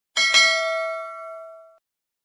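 Chime sound effect: two quick strikes close together, the second louder, then ringing tones that fade over about a second and a half before cutting off.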